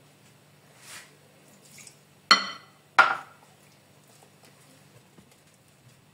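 Two sharp clinks of glassware about two-thirds of a second apart, the first ringing briefly, as a drinking glass knocks against a glass mixing bowl; a faint low steady hum runs underneath.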